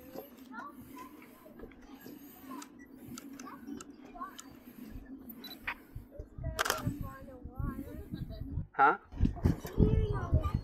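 Faint voices over a low steady hum, then from about six seconds in a run of low thumps from footsteps on the suspension bridge's wooden plank deck, growing louder near the end.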